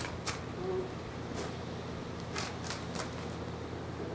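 A horse's hooves shifting on gravel: a handful of short crunches and clicks scattered through, over a steady low hum.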